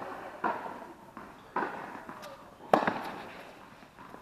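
Tennis ball being struck by rackets and bouncing on an indoor hard court during a rally: three sharp impacts about a second apart, the third the loudest, each ringing on in the hall's echo.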